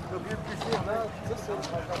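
Indistinct voices of people talking nearby over a low outdoor rumble, with a faint steady hum.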